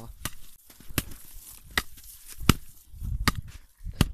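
A wooden-handled tool striking the hard, icy snow of an old igloo wall, five sharp hits about one every three-quarters of a second, with crunching of the snow between them.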